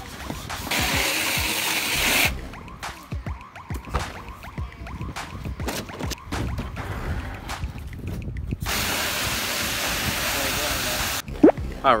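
Soapy water sloshing and pouring out of a plastic kiddie pool onto asphalt. There are two spells of steady rushing water, about a second in and again past the eight-second mark, with irregular splashes between them.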